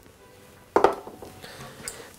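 A single short clack about a second in, as a plastic salt mill is set down on the wooden worktop, followed by faint handling noise.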